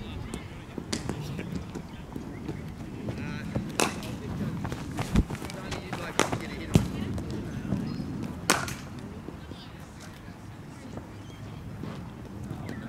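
Several sharp, isolated cracks and knocks of a cricket ball in a practice net, including leather ball on bat, over a low background rumble. The loudest come around six and eight and a half seconds in.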